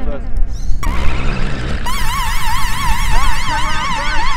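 Wind buffeting the microphone with a steady low rumble. About two seconds in, a bright electronic synthesizer tone comes in, warbling quickly up and down in pitch.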